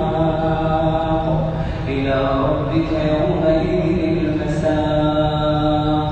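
A man's voice reciting the Quran in a slow melodic chant, holding long drawn-out notes that step and waver in pitch, with a brief breath about two seconds in.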